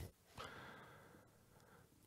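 Near silence in a pause between sentences, with one faint breath from the speaker on the microphone about half a second in.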